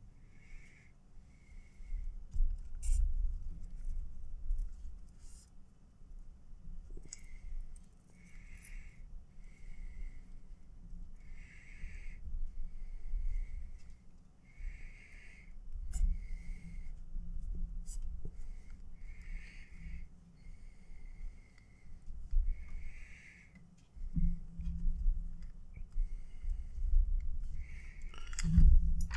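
Paracord being worked by hand with a metal fid on a bracelet jig: irregular low bumps and rubbing as the cords are pushed through and pulled tight. Soft, regular breathing close to the microphone recurs every second or two, alternating stronger and weaker puffs.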